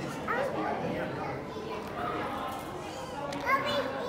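Children's voices and background chatter echoing in a large hall, with a short high-pitched rising call from a child about three and a half seconds in.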